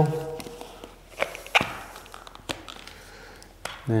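Handling of a Graco TC Pro handheld airless paint sprayer as it is set up with its battery and paint cup: a few separate sharp plastic clicks and knocks, the loudest about a second and a half in.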